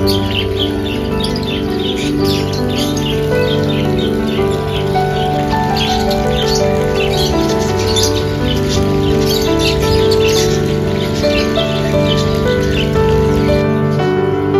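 A flock of small parrots chirping and twittering in quick, overlapping calls, over background music with soft held notes.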